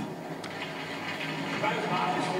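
Faint, indistinct voices over a steady murmur of arena ambience, heard through a television's speaker, with one short click about half a second in.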